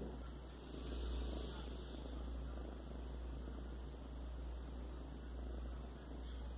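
Kitten purring close to the microphone: a steady low rumble.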